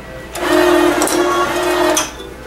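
Bench-top bottle capping machine running: its motor-driven chuck spins for about a second and a half, screwing a cap onto a glass oil bottle. It starts about half a second in and stops abruptly.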